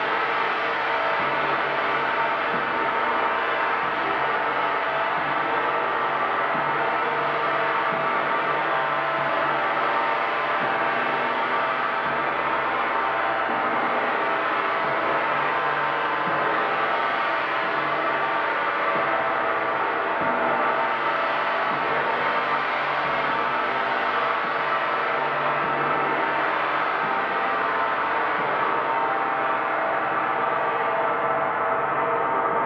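Large hanging gong kept sounding by continuous strokes of two soft felt mallets, building a dense, steady wash of many ringing overtones at an even loudness.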